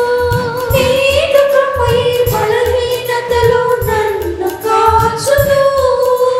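Telugu Christian worship song: held, gliding sung melody over instrumental accompaniment with a steady beat, with the congregation singing along.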